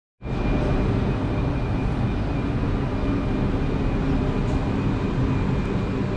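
Steady low rumble and hum of a double-deck Île-de-France commuter train standing at an underground station platform, with a faint, steady high whine over it.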